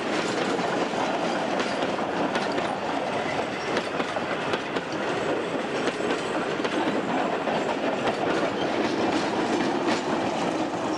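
Passenger train carriages rolling past close by, their wheels clicking steadily over the rail joints.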